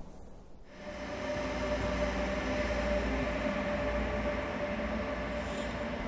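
Electric high-speed passenger train running through a station: a steady rumble and hum with a held tone, growing in about a second in.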